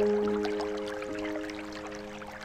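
Soft solo piano: a chord rings and slowly fades, with a couple of quiet notes added, over faint trickling water.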